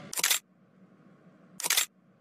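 Two short, sharp clacks about a second and a half apart, over a faint low hum.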